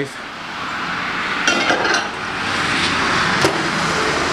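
A microwave oven being shut and set: one electronic beep of about half a second, about one and a half seconds in, and a sharp click near the end. Under both runs a steady rushing noise that builds over the first two seconds.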